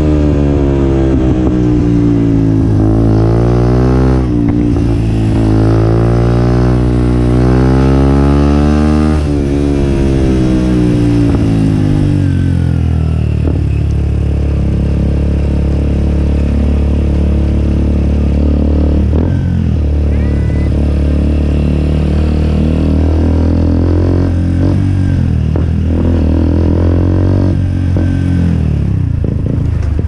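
Benelli RNX 125 motorcycle engine through a replica Akrapovic exhaust. It revs up, drops sharply in pitch at a gear change about four seconds in, and climbs again before winding down at around ten seconds. It then holds a steady low note, with a few small rises and falls near the end.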